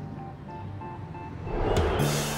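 Soft background music with a few quiet sustained notes, then a rising rush of noise swelling up near the end.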